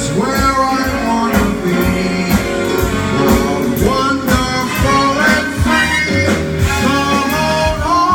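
Live band music with keyboards, strings, upright bass and drums, and a man singing over it in long, gliding vocal lines.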